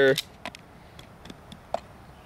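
A hand tool probing a bullet hole in a steel gun safe door, giving a handful of light, scattered clicks as it taps against hard metal inside.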